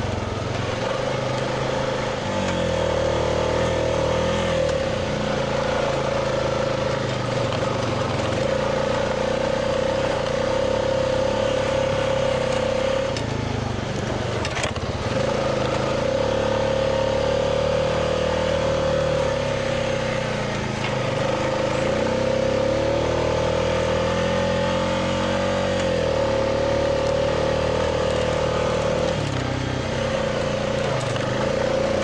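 Honda Rubicon 520 ATV's single-cylinder engine running as the quad is ridden along a dirt track, its pitch rising and falling with the throttle. The drone drops away briefly about halfway through, with a single knock, then picks up again.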